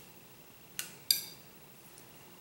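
Two light clinks of small hard objects being set down, a third of a second apart near the middle, the second sharper with a brief ring; otherwise quiet room tone.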